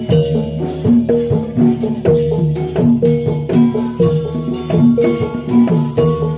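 Jathilan gamelan music: metallophones play a repeating pattern of pitched notes, about two a second, over drum and other percussion strokes.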